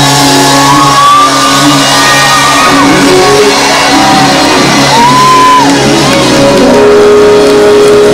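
Live band playing in a large hall, with electric guitars and drums. Over it, a long high note slides up, holds and falls away twice.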